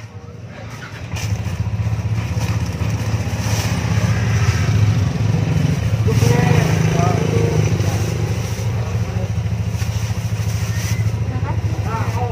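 A small engine running steadily with a low, even drone that gets louder about a second in, with people talking over it around the middle.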